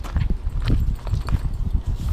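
Handling noise from hands working fishing tackle right against the camera's microphone: irregular low knocks, bumps and rubs, with a few sharper clicks.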